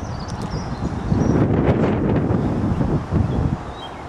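Wind buffeting the camera's microphone: a low rumble that grows louder about a second in and eases near the end. A faint high bird call sounds near the start.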